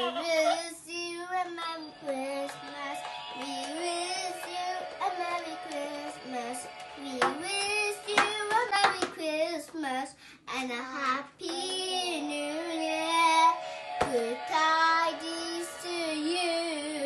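A young girl singing into a toy karaoke microphone, with music playing along.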